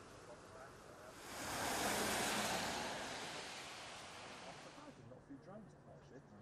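Outdoor hiss on a clifftop that swells into a single loud rushing surge about a second in, peaks soon after and dies away slowly over the next few seconds.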